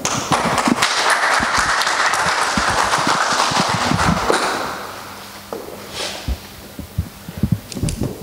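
Audience applauding after an oath of office, a dense patter of clapping that fades out about four and a half seconds in. Scattered low thumps and knocks follow as press microphones on the lectern are handled.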